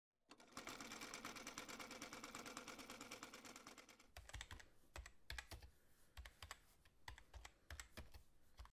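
Faint typing sound effect. It begins with a fast, dense run of key clicks for about four seconds, then turns to single keystrokes a few a second, each with a soft low thud, in time with the title's letters appearing.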